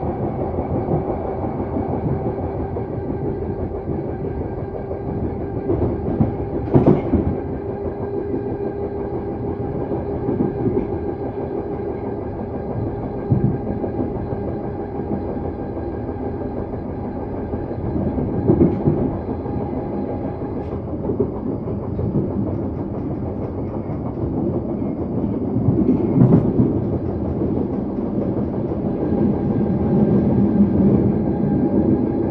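A London Underground 1972 stock train running at speed, heard from inside the carriage: a steady rumble of wheels on rail with a humming tone, and several louder clunks from the wheels and track along the way.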